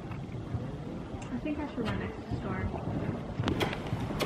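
A horse's hoofbeats on soft arena footing, a few dull thuds that get sharper near the end as the horse nears, with faint voices in the background.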